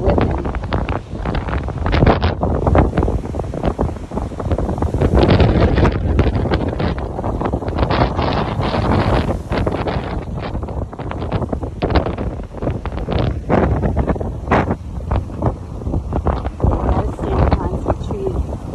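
Strong gusty storm wind buffeting the phone's microphone, a loud continuous rumble with irregular blasts as the gusts hit, over the wash of rough surf.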